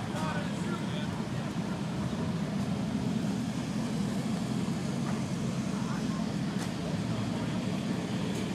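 A motor-vehicle engine running steadily at idle, with faint voices behind it.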